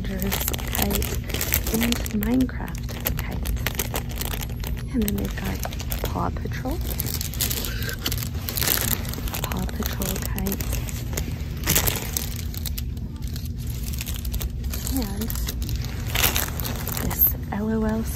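Plastic bags of packaged kites crinkling as hands squeeze and handle them, in many short irregular crackles. A steady low hum and faint voices sit underneath.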